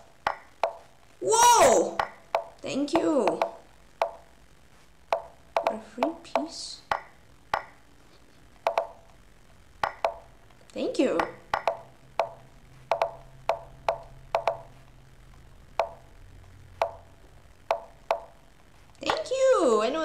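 Lichess chess-move sound effects: a long irregular run of short plopping clicks, roughly one every half second, as moves are played in a fast bullet game. Brief wordless vocal noises from the player come in between, the loudest about a second in and again about eleven seconds in.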